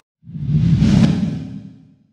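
Logo-sting whoosh sound effect: a single deep whoosh that swells up just after the start, peaks about a second in, then fades out.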